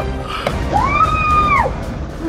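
A girl's long, high-pitched scream of surprise, held for about a second in the middle and falling away at the end, over background music with a steady beat.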